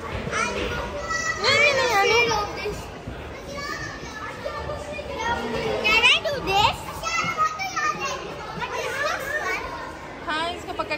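Young children talking and calling out as they play, their high voices rising and falling, with the loudest calls about a second and a half in and again about six seconds in.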